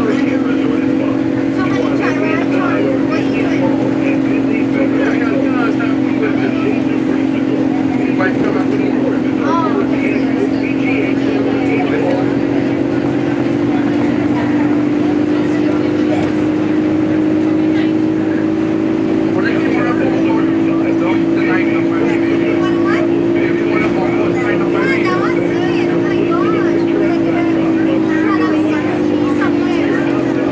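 Walt Disney World monorail heard from inside the car: the steady whine of its electric drive running at speed, rising slowly in pitch through the middle and falling again near the end.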